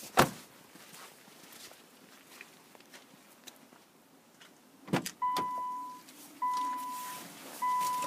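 A car door shuts with a sharp thud just after the start, then a few quiet seconds. About five seconds in a door clunks open and the 2014 Subaru Legacy's warning chime starts: a steady beep held for most of a second, repeated three times about every 1.2 seconds, the reminder that sounds with the driver's door open and the key in the ignition.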